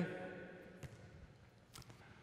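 A volleyball being played in a large gym: two faint knocks of the ball being struck, about a second apart, over a low hum of the hall.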